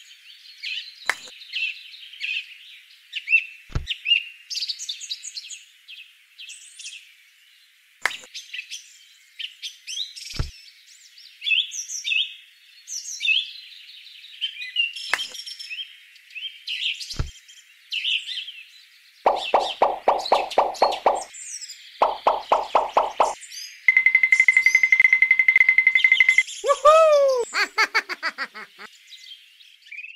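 Continuous birdsong chirping, with a few short low pops spread through the first half. From about two thirds of the way in come cartoon-like sound effects: two bursts of rapid buzzing pulses, a steady high beeping tone, then a run of falling, springy boing-like glides.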